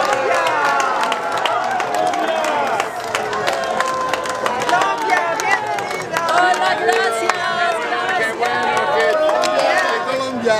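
A crowd of many voices talking and calling out at once, with scattered hand clapping.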